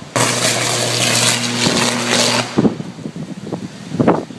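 A downed live power line arcing to the road as the breaker automatically recloses and re-energizes the fault: a loud electrical buzz and crackle over a steady low hum. It lasts about two and a half seconds and cuts off abruptly as the breaker trips again, leaving weaker irregular sounds.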